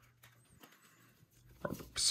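Near silence with a few faint ticks of paper trading cards being shuffled in the hands, then a short voice sound near the end.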